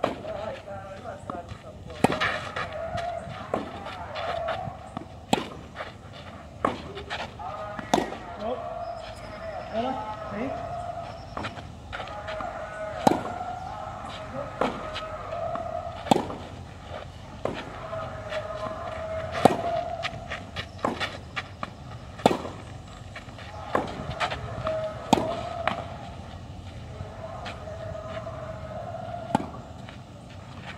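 Tennis rally on a clay court: sharp pops of a racket striking the ball about every three seconds, with fainter hits and bounces in between. A continuous wavering, voice-like sound runs behind the strikes.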